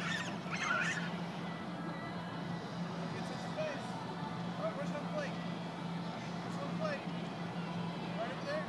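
Outdoor ballpark ambience: a steady low hum under scattered distant children's voices, with one high-pitched shout in the first second.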